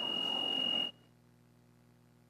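Church organ holding a full sustained chord with a steady high tone in it, cut off abruptly a little under a second in. What remains is near silence with a faint steady hum.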